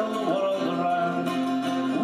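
Live folk band music: acoustic guitars strumming under a sustained melody line, with little bass, heard through a television's speaker.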